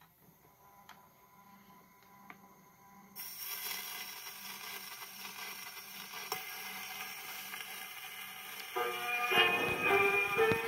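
A portable wind-up gramophone with a few faint mechanical clicks and a low hum as the turntable is started. About three seconds in, the needle meets the spinning 78 rpm shellac record and a steady surface hiss sets in. Near the end the record's dance-band introduction begins, played acoustically through the machine.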